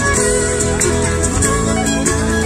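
A live folk band led by a violin plays dance music with a steady drum beat.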